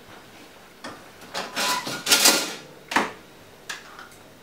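Kitchen handling noise as the sauce is fetched: a scraping, clattering stretch of about a second in the middle, then two short knocks near the end.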